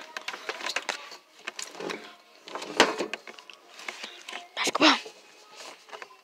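Rustling and handling noise with scattered small knocks, as someone moves about close to the camera around a metal bed frame. A sharper knock comes about three seconds in, and a short loud rushing noise comes just before the five-second mark.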